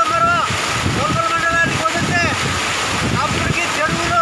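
A man speaking loudly in the open, with steady wind buffeting the microphone underneath his voice.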